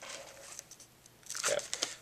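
A hardcover book being handled close to the microphone, its pages and jacket rustling and crackling in scattered light clicks. There is a denser burst of crackling shortly before the end.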